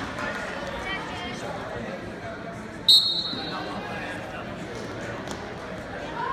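Referee's whistle: one short, loud, shrill blast about three seconds in, starting the wrestling, over steady crowd chatter.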